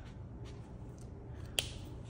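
Plastic marker pens being handled over a paper journal: a couple of faint ticks, then one sharp click about one and a half seconds in.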